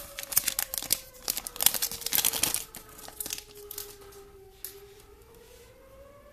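Foil trading-card pack being torn open and crinkled, with dense sharp crackles for the first two and a half seconds, then quieter rustling. A faint steady tone underneath slowly falls in pitch and rises again.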